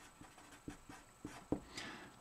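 Felt-tip marker writing on paper: faint scratchy strokes with a few short, sharp clicks.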